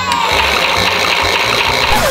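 Toy washing machine set running after its button is pressed: a steady noisy rattling whir, with a short falling tone at the start, over background music.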